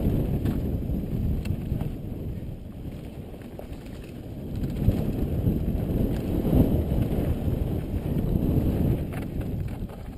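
Mountain bike descending a rough dirt singletrack: tyres rolling and chattering over dirt and rocks, with wind rumbling on a helmet-mounted camera's microphone and a few clicks from the bike. The noise grows louder about halfway through as the pace picks up.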